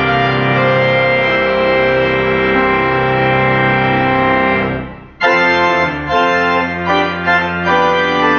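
Pipe organ playing long sustained chords that fade away just before five seconds in. A new passage of shorter, moving notes starts at once.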